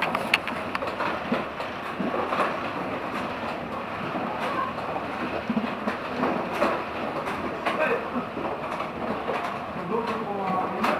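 Coaster-style ride car running along its rails through a tunnel: a steady running noise with scattered clicks from the track.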